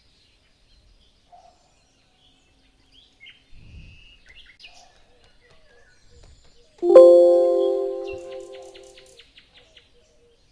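A single chime struck about seven seconds in, several steady pitches ringing together and fading over about two and a half seconds. Before it there are only faint soft high chirps.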